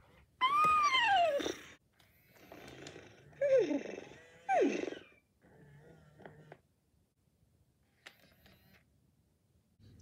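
Hasbro FurReal Friends Cinnamon animatronic toy pony, just switched on, playing recorded horse sounds through its small speaker: a long whinny that rises and falls about half a second in, then two shorter falling calls at about three and a half and four and a half seconds. Fainter sounds follow as it moves.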